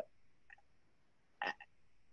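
Near silence: a pause in a man's speech over a video call, broken by one short, clipped vocal sound about a second and a half in.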